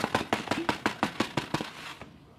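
Stiff plastic container being handled, giving a quick run of sharp clicks and crackles, about six a second, that stop shortly before the end.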